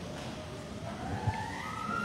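A siren winding up, a single tone rising steadily in pitch and levelling off near the end.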